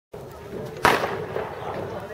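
A single loud, sharp bang a little under a second in, over a steady murmur of people talking.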